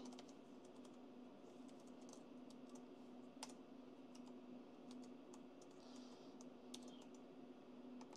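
Faint, sparse key clicks on a laptop keyboard, one sharper than the rest about midway, over a steady low hum.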